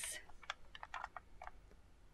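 Faint, irregular light clicks of long acrylic nails tapping and knocking against small clear plastic pigment pots in a plastic tray.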